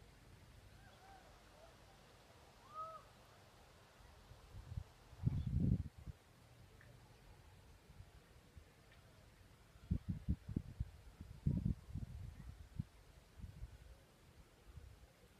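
A few faint bird calls, short arching notes in the first three seconds. Then the microphone is buffeted by low rumbling bursts, loudest about five seconds in and again in a cluster from about ten seconds.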